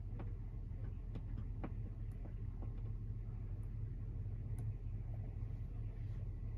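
A steady low hum of machinery inside a cab, with scattered faint taps of a finger on a touchscreen display.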